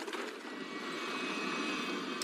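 Hard plastic wheels of a child's low-riding tricycle rolling along a hard floor: a steady rumbling roll that grows slightly louder.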